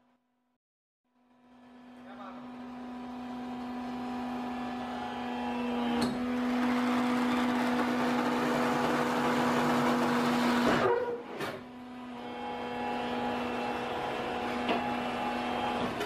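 Coco peat block-pressing machine running. A steady low hum carries a noisy hiss that builds over several seconds, drops off sharply about eleven seconds in, then builds again. The sound starts about a second in.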